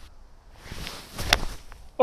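Quiet outdoor background with a couple of short, sharp knocks a little over a second in.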